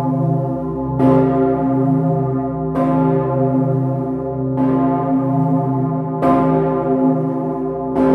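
The Pummerin, a roughly 20-tonne bronze church bell cast in 1951 and tuned to C0, swinging and ringing close up: four clapper strokes about 1.7 seconds apart, each one ringing on into the next with a deep, sustained hum.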